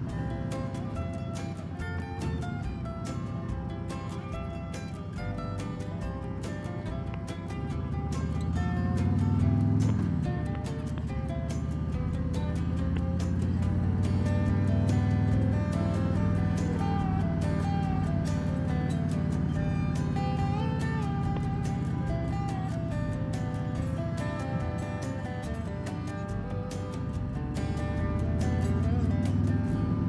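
Background music with a steady beat, over a motorcycle engine running underneath; the engine's pitch rises about eight seconds in and drops off about two seconds later.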